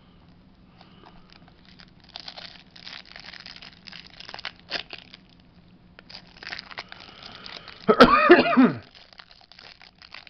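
Crinkling of a clear plastic bag as hands work trading cards out of it, in scattered rustles. About eight seconds in, a loud cough breaks in, lasting under a second.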